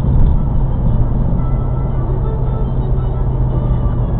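Steady low drone of engine and tyre noise inside a car cruising at highway speed, with music from the car radio running underneath.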